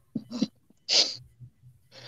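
A person sneezing into a call microphone: two short catches of breath, then a sharp hissing burst about a second in.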